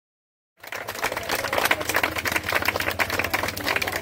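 Dead silence, then about half a second in, a small crowd starts clapping, a fast run of claps over a steady low hum and street hubbub.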